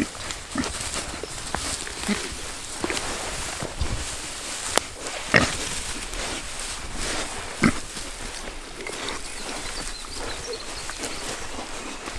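Red Wattle feeder pigs eating a whole watermelon: wet chewing and crunching of the rind with snuffling at the fruit, and a few sharper cracks, the clearest about five seconds in and again nearly eight seconds in.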